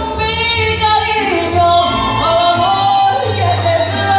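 Mariachi ensemble playing a ranchera medley live: a section of violins under a woman's lead vocal, with long held notes, over a low bass line.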